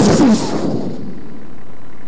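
A loud shouted cry straight into a handheld microphone, overloading the PA so it comes through distorted like a blast. The cry falls in pitch and dies away within about a second.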